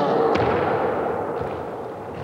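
A sudden heavy thud at the start, followed by a long echoing decay that fades slowly, with a sharp click about a third of a second in.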